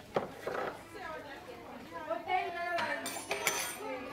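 Metal teaspoons and cutlery clinking briefly about three seconds in, over low background chatter of voices in a busy kitchen.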